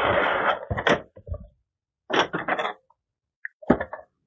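A clear plastic fan clamshell sliding out of its cardboard box with a short scraping rustle, followed by scattered clicks and knocks of plastic being handled, the sharpest pair near the end.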